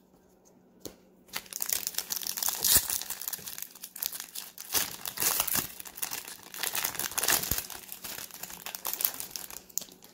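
Foil wrapper of a Topps Total baseball card pack crinkling and crackling as it is torn open and worked by hand, starting about a second in.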